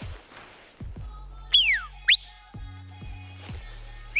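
A person whistling a call signal: one loud whistle gliding down in pitch, then a short one sweeping up about half a second later.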